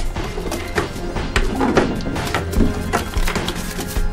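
Background music over repeated short wooden knocks and clatter from the drawers of a wooden chest being pulled open and rummaged through.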